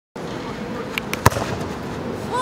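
A football being kicked: one sharp thud a little over a second in, the loudest sound, just after two fainter knocks, over steady outdoor background noise.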